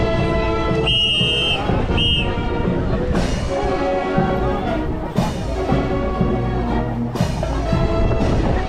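Marching band music with drums and brass playing steadily, with two short high tones about a second and two seconds in.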